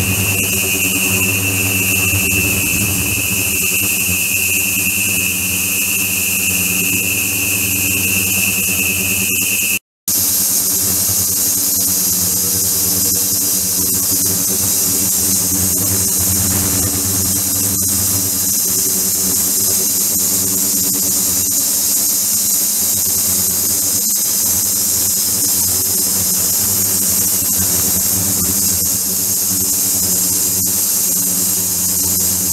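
Ultrasonic cleaning tank running with its liquid circulation system: a steady hum and hiss, with a high-pitched whine over it for the first ten seconds that is gone after a brief break.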